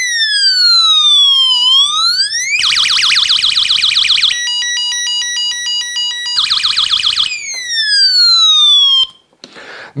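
A cheap electronic sound-effects generator board, driven through a transistor into a small loudspeaker, plays a harsh electronic siren. It wails slowly down and up, switches to a fast warble, then a stepped two-tone alarm pattern, the fast warble again, and ends with a long falling sweep. It cuts off about nine seconds in.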